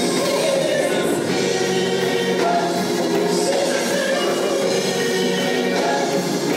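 Gospel praise team singing with band accompaniment: a lead singer at the microphone and a choir behind her, the singing steady and unbroken.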